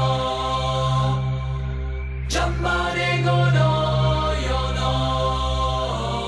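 Early-1990s dance music: long held chords, chant-like, over a steady low bass, with a brief rushing sweep a little over two seconds in.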